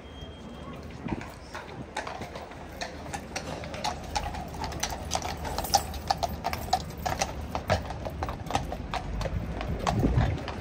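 Shod hooves of Household Cavalry troop horses clip-clopping at a walk on stone paving: a run of sharp clacks, several a second, that starts about two seconds in and grows louder.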